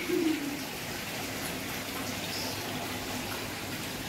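Steady, even hiss of room noise with a faint low hum, and a short falling tone in the first half second.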